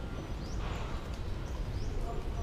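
Small birds chirping: a few short rising chirps, about half a second in and again near the end, over a steady low background rumble.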